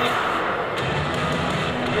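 Background music playing steadily at a moderate level.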